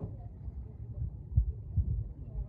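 Low rumble with a couple of soft thumps, about one and a half and nearly two seconds in.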